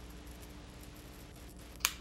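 Rechargeable electric arc candle lighter switched on, giving a faint steady crackling hiss, with a sharp click near the end.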